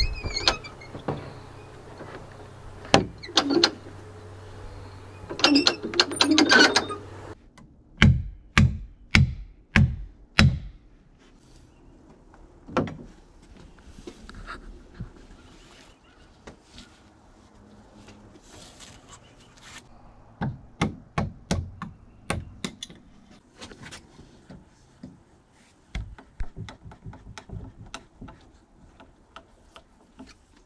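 A chainsaw idling with a steady low hum and some sharp clicks, cutting off about seven seconds in. It is followed by a run of heavy knocks, about two a second, then scattered metallic clicks and knocks from the lifting gear as a log is worked in its straps.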